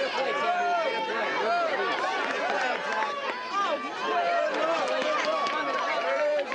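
Several voices shouting and calling out over one another without a break, as from lacrosse players on the field and the team bench during live play.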